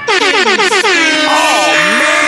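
DJ air-horn sound effect used as a mixtape transition: a rapid string of short blasts, about seven in the first second, then longer tones that slide down and back up.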